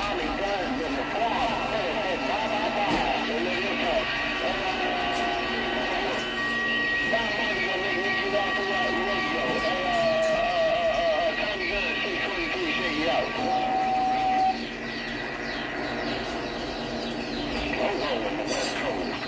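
CB radio receiving distant skip: garbled, warbling voices talking over one another, with steady whistling tones from stations on nearby frequencies through the middle. It drops a little in loudness about fourteen seconds in.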